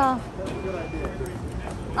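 Speech and background voices in a busy public space: a loud voice trails off at the start, then quieter murmur, with a faint thin steady tone for under a second.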